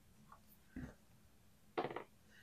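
Plastic four-sided die rolled on a hard tabletop: a faint tap a little under a second in, then a short clatter near the end as it lands.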